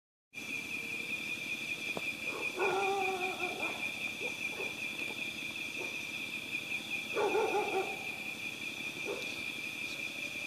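A steady, high-pitched drone of night insects, with a dog barking in two short bouts, the first about two and a half seconds in and the second about seven seconds in.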